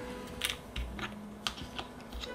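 A handful of light, sharp clicks and taps as board game pieces, tokens and cards are handled and set down on the tabletop.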